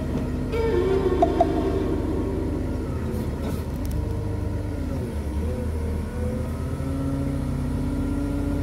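Diesel engine of a Cat wheel loader with a tyre-handler attachment running steadily under load as it moves a haul-truck tyre, a continuous low rumble with slight shifts in pitch.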